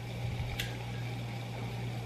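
Low steady hum with one faint click about half a second in.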